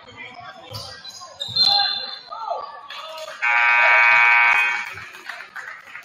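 A referee's whistle blows once, sharp and high, about one and a half seconds in, stopping play; then the gym's scoreboard horn sounds one loud, steady blast of about a second and a half.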